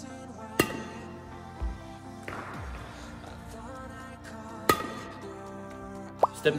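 Background music playing, with two sharp clicks about four seconds apart: a badminton racket's strings striking a shuttlecock on a flick serve.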